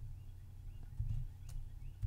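A couple of soft computer-keyboard keystrokes, about a second and a second and a half in, over a low steady hum.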